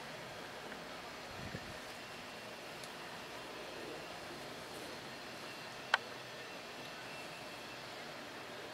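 Quiet, steady outdoor background noise, with a single sharp click about six seconds in.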